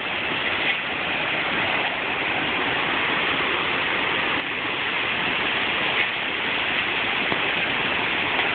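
Torrential rain pouring down steadily, with wind, in the storm of a tornado passing close by.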